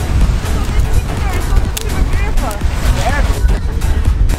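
Strong, gusty wind buffeting the camera microphone as a heavy, continuous low rumble, with fragments of voices over it.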